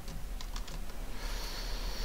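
Computer keyboard typing: a few separate keystrokes as a word is entered into a text field, followed by a short soft hiss near the end. A steady low hum runs underneath.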